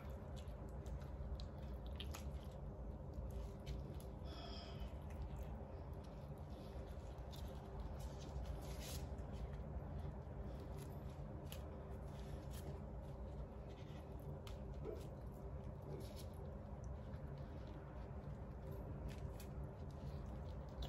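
Faint wet handling of raw chicken with plastic-gloved hands: soft squishes and small scattered clicks as fat is pulled off, over a steady low hum.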